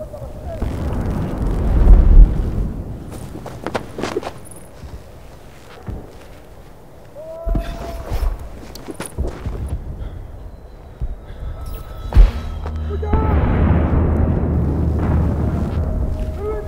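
Spell sound effects in a wand duel: a swelling rush that ends in a loud boom about two seconds in, then several sharp cracks, and a long rumbling swell near the end.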